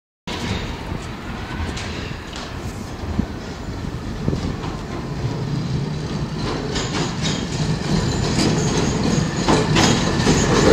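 Manchester Metrolink T-68 light-rail tram approaching along the rails, its running growing steadily louder as it nears. Clicks and knocks from the wheels on the track come more often in the last few seconds as it draws alongside.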